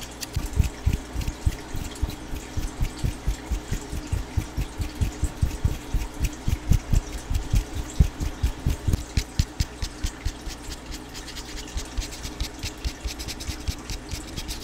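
Fingertips tapping and rubbing on a microphone's metal mesh grille right at the capsule, a quick run of deep thumps several times a second. After about nine seconds the thumps give way to lighter, crisp scratching and clicking.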